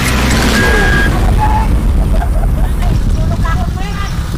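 Heavy wind rumble on the microphone of a camera riding a bicycle fast downhill, with voices calling out over it in the second half.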